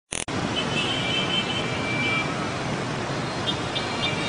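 Steady din of dense motorbike and scooter traffic crossing a busy intersection, with high-pitched horns held for a second or more, twice. A brief sharp click at the very start.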